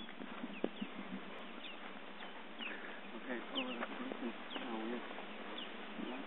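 Canada geese on the ground giving soft calls: a scatter of short, high, falling peeps throughout, with some lower calls in the middle seconds.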